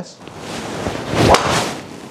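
A golf driver swing: a rising swish of the club through the downswing, then one sharp crack about a second and a third in as the Callaway Paradym Triple Diamond driver strikes the ball.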